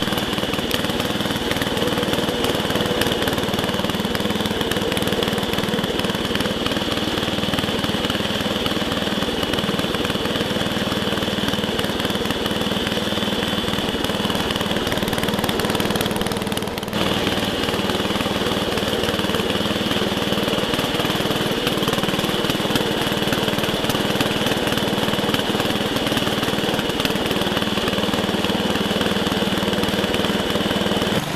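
1967 Montgomery Ward Squire 10 garden tractor's engine running steadily as the tractor is driven, heard close up from the seat, with one brief dip a little past the middle.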